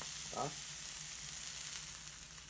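Two eggs sizzling in a pan with a little butter and water: a steady, high hiss.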